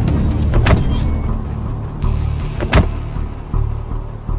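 Dramatic background score: a steady low rumbling drone with sharp hit effects about 0.7 seconds and 2.7 seconds in.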